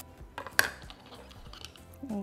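A few light clicks and a knock, clustered about half a second in, from a knife and a cut burrito being handled on a wooden cutting board.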